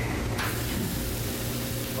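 A raw ground-beef hamburger patty sizzling steadily on a hot, lightly oiled flat-top griddle; the sizzle sets in about half a second in, as the patty goes down on the metal.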